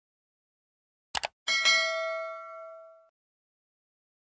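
A quick double mouse-click sound effect, then a single notification-bell ding that rings out and fades over about a second and a half: the subscribe-animation cue for the bell being pressed.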